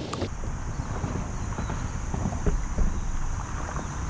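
Wind rumbling on the microphone of a stand-up paddleboard gliding over calm water, with scattered light knocks and drips from the paddle and board. A louder noise of water and paddling fades out just after the start.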